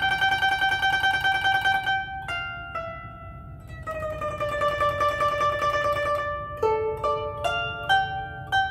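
A guzheng (Chinese plucked zither) played solo. A high note is held with rapid tremolo picking for about two seconds, followed by two single plucks. A note then bends slightly down in pitch and is held with tremolo, and a quick run of separately plucked notes comes near the end.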